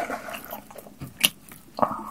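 Close-miked eating sounds: wet chewing and mouth noises, with irregular clicks and rustles as gloved hands pick up a tortilla wrap from a plastic sheet. There is a sharp click a little over a second in.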